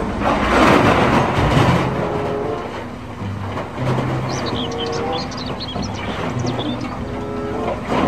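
Diesel engine of a large wheel loader running steadily while its bucket load of earth pours into a dump truck's bed, a loud rushing of falling material loudest in the first couple of seconds.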